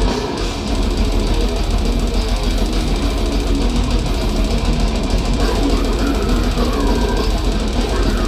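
Technical death metal band playing live through a loud PA: distorted guitars, bass and drums with the singer's growled vocals, heard from within the crowd.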